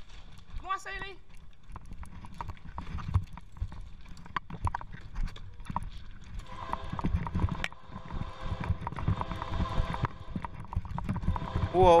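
Bicycle jolting along a railway track over sleepers and ballast, making a quick, uneven run of rattling knocks. From about halfway a steady droning tone joins in.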